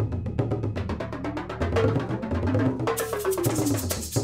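Percussion music soundtrack: a fast, even run of drum strokes over low pitched notes, growing brighter in the highs about three seconds in.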